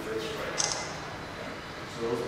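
A man's voice: brief, indistinct words, with a short hiss about half a second in.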